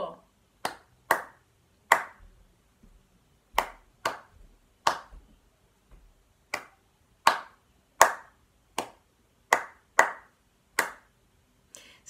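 A person's hands clapping out the rhythm of a tune's first line: about thirteen single claps with uneven gaps of short and longer spacing, following the note lengths.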